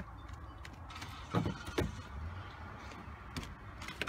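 Two sharp knocks about a second and a half in, a few tenths of a second apart, then a weaker one near the end, as a hand pushes and bangs on a house window's glass and frame, trying to force it open. A low rumble runs underneath.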